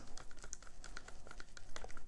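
Wooden craft stick stirring acrylic paint and pouring medium in a plastic cup: a run of small, irregular clicks and taps as the stick knocks against the cup wall.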